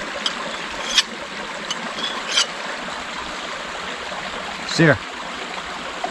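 A large knife blade scraped across a hand-held creek stone in four short strokes, about one every three-quarters of a second, while a nicked edge is sharpened on a found rock. A creek runs steadily underneath.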